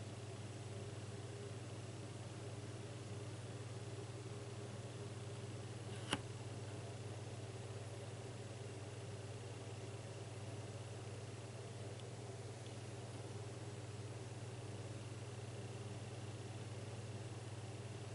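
Faint steady low hum, with one sharp click about six seconds in.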